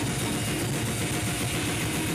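Slam death metal band rehearsing: distorted guitar, bass and drum kit playing together at a steady loud level, with fast, closely spaced low drum strokes.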